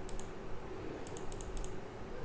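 Faint computer mouse clicks: two just after the start, then a quick run of several more about a second in, as the PDF page is zoomed in step by step.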